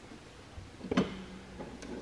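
A single light metallic click about a second in, amid faint handling noise, as the mower deck's spring-loaded belt tensioner is worked by hand.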